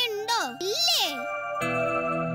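A young girl's voice, sliding widely up and down in pitch, over soft background music. About a second and a half in, the voice stops and a sustained chord of background music takes over.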